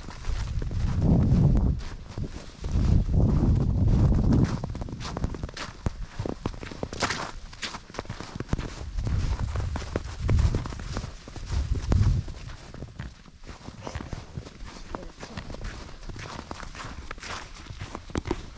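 Footsteps crunching through thin snow at a walking pace, a steady run of short crunches. Several gusts of wind buffet the microphone with a low rumble, the loudest near the start and again around the middle.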